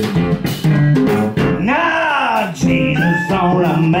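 A small blues band playing live: acoustic guitar and drum kit with clarinet. About halfway through, a long held note bends up and back down.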